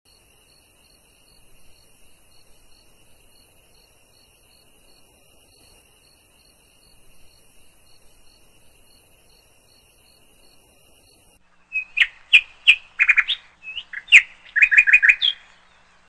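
Faint night ambience of insects, likely crickets, with a steady high trill and regular pulsing chirps. About twelve seconds in, louder songbird chirps come in quick bursts.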